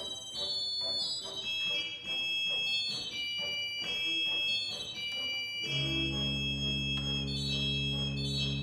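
Organ music: a line of held, high-pitched notes, joined about six seconds in by low, steady chords that hold without fading.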